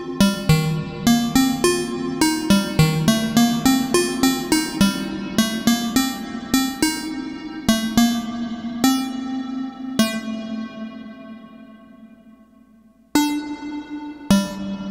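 Moog Labyrinth analog synthesizer playing a self-patched generative sequence of short, plucky pitched notes, with reverb on them. The notes come thickly, then thin out, and one last note rings and fades for about three seconds before the pattern starts again near the end. This is the bit-flip pattern filling up and then emptying out to nothing.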